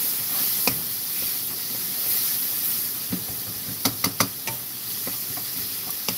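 Sliced onions and carrot stir-frying in a nonstick pan over high heat, sizzling steadily as a spatula turns them. The spatula knocks sharply against the pan now and then, loudest in three quick taps about four seconds in.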